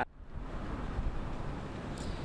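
Strong wind rumbling on the microphone outdoors: a steady low rumble with a faint hiss above it, starting suddenly after a cut.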